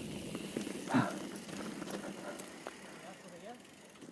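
Mountain bike rolling down a dirt trail, a steady rumble of tyres and rattle that fades as the bike slows. A rider gives a short 'ah' about a second in.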